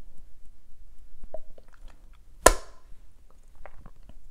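Small taps and clicks from handling a hard plastic makeup palette while applying makeup, with one sharp click that rings briefly about halfway through.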